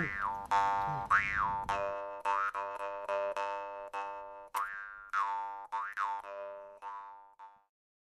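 Jaw harp being plucked over and over on one steady drone, its overtones sweeping up and down in a twanging rhythm. It fades out near the end.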